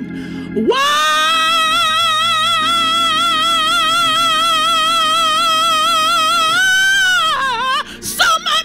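A woman singing a gospel song solo into a microphone, holding one long high note with wide vibrato for about six seconds, then dipping down in pitch as the phrase ends.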